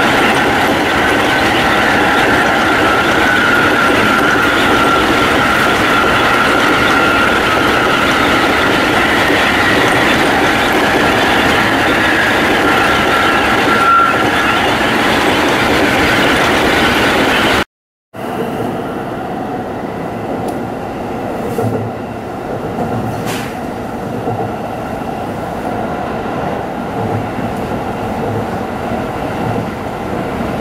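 Tsukuba Express electric commuter train running at speed, heard from inside the car: a loud, steady rumble and rush with a high whine that dips slightly in pitch now and then. About two-thirds through the sound cuts out for a moment. After that the running noise is quieter, with occasional low thumps and one sharp click.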